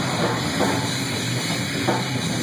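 Live rock band playing loudly, with amplified electric guitar and drum kit in a dense, continuous wall of sound.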